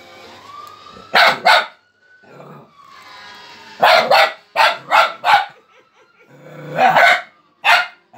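Fox terrier puppy barking in three bursts: two sharp barks, then a run of five, then two more. A thin, drawn-out whine rises and falls between them.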